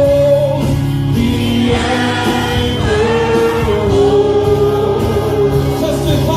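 Male gospel vocal group singing with musical accompaniment, loud and steady; a lead voice holds one long note through the second half.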